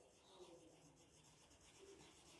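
Near silence, with the faint rubbing of a wax crayon colouring on paper.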